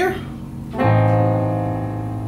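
A chord struck on a piano keyboard about a second in and held, slowly fading: right-hand A, C, E-flat over an A octave in the bass.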